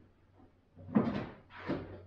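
Two short clattering knocks, about a second in and again near the end, from things handled in a wooden shelf cupboard.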